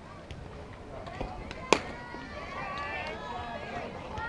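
A single sharp crack of a pitched softball at home plate, less than halfway in, followed by spectators' calls and chatter.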